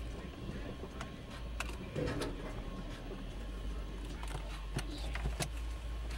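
Car driving slowly, heard from inside the cabin: a steady low rumble with scattered light clicks and rattles.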